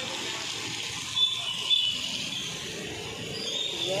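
Short high bird chirps, twice about a second and a half in and once more faintly near the end, over a steady hiss.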